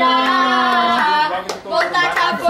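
Two girls singing a funk song unaccompanied, holding long notes, with a couple of sharp claps about halfway through.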